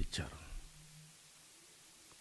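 A man's speech trails off into a microphone in the first half second, followed by a pause of about a second and a half with only faint room noise.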